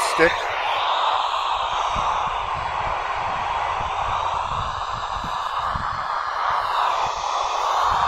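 FM receiver noise from a Kenwood TH-D72A handheld radio's speaker mic: a steady, loud hiss of static with squelch open on the SO-50 satellite downlink, the satellite's signal not coming through clearly.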